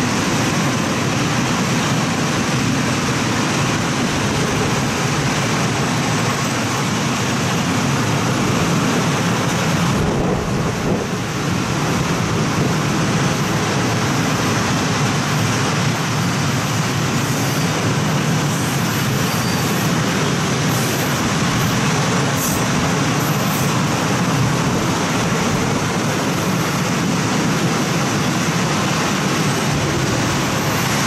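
Freight train of open coal wagons and self-discharging wagons rolling past on the rails: a steady, even noise of wheels on track.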